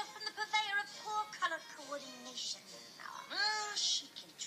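Animated cartoon's soundtrack playing: background music under high, sliding, squeaky character vocal sounds, with one loud rising-then-falling cry about three seconds in.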